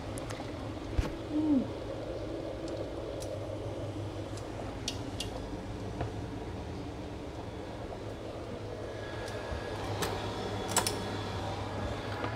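Water simmering in a stainless steel pot used as a water bath around a bowl, a steady low bubbling with a few light clicks. A brief low tone sounds about a second in.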